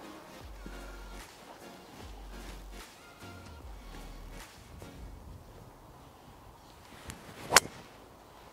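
Faint background music with low bass notes, then near the end one sharp crack of a driver striking a golf ball off the tee.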